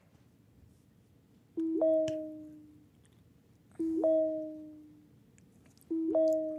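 Three identical two-note computer alert chimes, about two seconds apart, each a low note with a quick higher note on top that fades out over about a second: the film's on-screen message notifications arriving.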